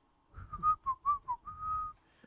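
A man whistling a short tune: five quick notes that bend up and down in pitch, then one longer held note near the end.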